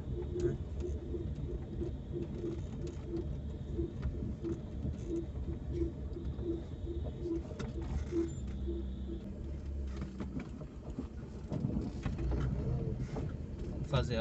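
A quick series of short, low cooing notes, two to three a second, runs through the first half and then stops, heard over a car's low engine and road noise from inside the cabin.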